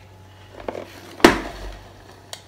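Red Copper 5 Minute Chef double-sided electric cooker being flipped over by its handle: a couple of light clicks, then one loud clunk about a second and a quarter in as it comes down on its other side on the granite counter.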